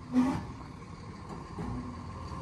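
Box truck's engine running at low speed as it is slowly backed up, a steady low engine note.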